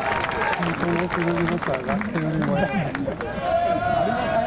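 Several people's voices calling out and talking over one another, some calls held long like shouts, with a few sharp taps in between.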